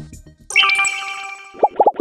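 A news outlet's sound-logo jingle: a bright chime sounds about half a second in and rings as it fades, then three quick popping notes come near the end and cut off sharply.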